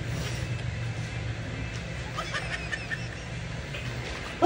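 Steady low hum of room background, with a few faint clicks and rustles about two seconds in.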